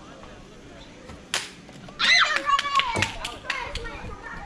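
A plastic wiffle bat hits a wiffle ball with one sharp knock about a second in. A second later a kid lets out a long yell, mixed with several quick sharp claps or taps.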